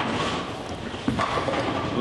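Tenpin bowling ball rolling down a wooden lane after a straight-ball spare shot at a single pin, a steady rolling sound with no pin impact yet.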